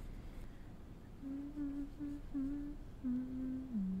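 A woman humming a short, wordless tune in a few brief notes, starting about a second in; the last, longer note dips in pitch near the end and rises again.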